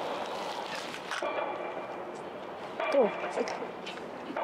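Steady outdoor wind and sea noise as a spinning rod is cast off a pier, with a brief sharp sound about a second in.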